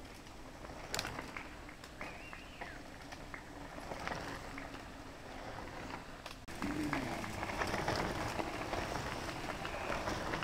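A mountain bike passing close on a dirt and gravel trail: tyres crunching over loose stones with scattered clicks and rattles, getting louder from a little past the middle as the rider nears. Faint shouts from spectators come in a couple of times.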